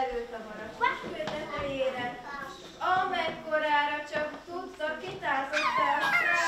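An adult woman's voice making wordless, animal-like sung calls, several in a row with sliding pitch.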